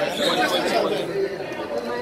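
Several people talking at once, indistinct crowd chatter with no single clear voice.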